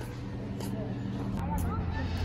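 Steady low hum of background ambience with faint distant voices. A short click comes about one and a half seconds in, and after it the low rumble grows louder.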